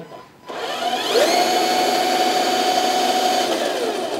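Electric drive motor and gearbox of a 1/10-scale MD Model UM406 RC truck, run in high gear with the wheels spinning free. It spins up quickly about half a second in, holds a steady high whine, and winds down near the end.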